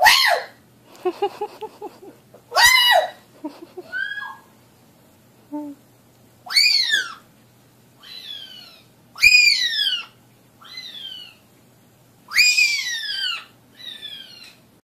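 African grey parrot whistling loudly: five strong calls a few seconds apart, each rising quickly and then falling in pitch, with softer short whistles and a quick run of clipped chirps between them.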